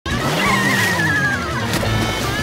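Cartoon soundtrack: music with a wavering, falling whistle-like sound effect, then a short splash of water near the end.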